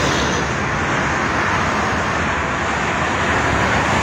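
Steady traffic noise from a toll road: the tyres and engines of cars and buses passing at speed blend into a continuous rushing sound.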